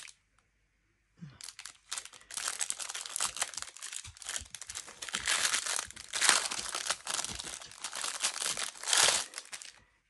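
Thin clear plastic packaging bag crinkling and rustling in the hands as it is opened and a small plastic tray is taken out. It starts about a second in and goes on, irregular and close, until just before the end.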